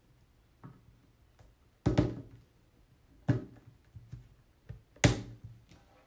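Rigid plastic cage grid panels knocking together as the back wall of a partridge cage section is fitted onto the interlocking edges: three sharp knocks about two, three and five seconds in, the last the loudest, with a few fainter taps between.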